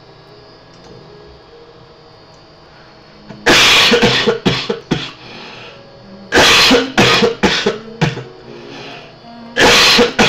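A man coughing hard in three fits, each a loud first cough followed by several shorter ones. The fits start about three and a half seconds in, at about six and a half seconds, and near the end.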